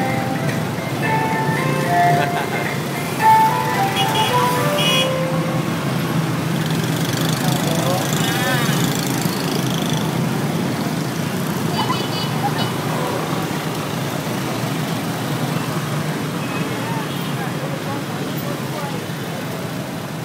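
Dense motorbike and car street traffic with a crowd's voices: a steady engine hum, broken by short tonal beeps at several pitches in the first few seconds and a few more later.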